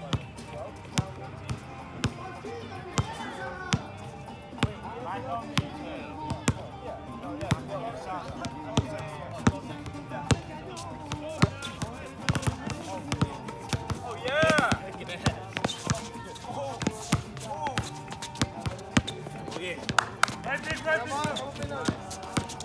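Basketball bouncing on an outdoor hard court: repeated sharp thuds of dribbling at an uneven pace, with players' voices calling out, one loud call about fourteen seconds in.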